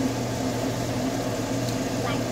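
Steady hum of a kitchen fan or appliance running, with a constant low drone.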